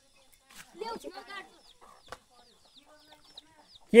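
Faint bird calls. A brief lower call comes about a second in, then a run of short high chirps, roughly four a second.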